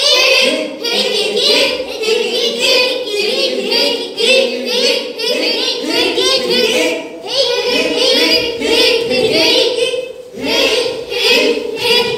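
A group of children's voices singing together in unison, almost without pause and with brief breaks a little past halfway and near the end.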